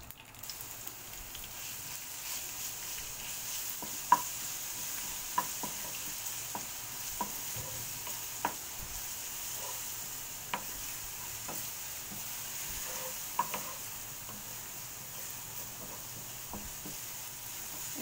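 Chopped garlic and cumin seeds sizzling in hot oil in a nonstick pan, a steady hiss, with a wooden spatula stirring and tapping against the pan every second or so.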